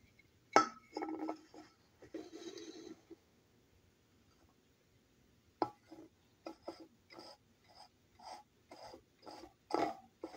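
Aluminium beer cans being set down and arranged on a tabletop: a sharp knock about half a second in, then scraping and clinking for a couple of seconds. After a pause, a run of about ten short soft taps, roughly two a second.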